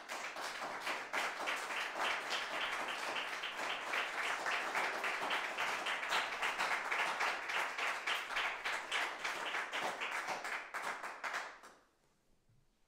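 Audience applauding: steady clapping that starts right at the end of a song and dies away near the end.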